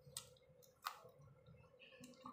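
Faint wet mouth clicks and lip smacks of someone eating chicken curry and rice by hand, with two sharper clicks, the louder a little under a second in, over a faint steady hum.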